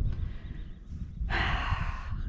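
A person's audible in-breath, lasting under a second and starting a little past the middle. Underneath it runs a steady low rumble.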